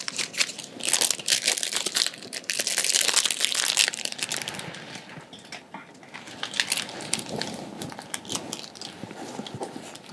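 Crinkling and rustling of handled materials under gloved hands, with many small crackles, busiest in the first four seconds and thinning to scattered clicks later.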